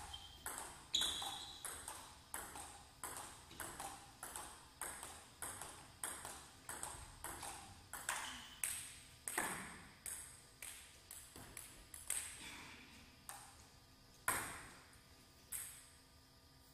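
Table tennis rally: a plastic ball knocking back and forth off rubber-faced bats and the table, about two sharp knocks a second. The rally stops about eleven seconds in, followed by a few scattered knocks as the ball comes loose after the point.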